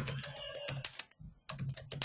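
Computer keyboard keys clicking in a quick run as a line of text is typed, with a brief pause a little past the middle.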